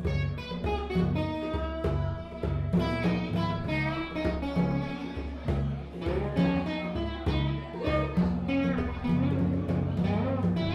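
Live music led by a strummed acoustic guitar, steady chords in an even rhythm over low bass notes.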